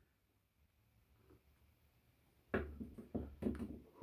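Near silence for most of the time, then about a second and a half of irregular knocks and rustling near the end.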